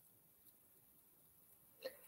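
Near silence, a pause in speech, with one brief faint sound just before the end.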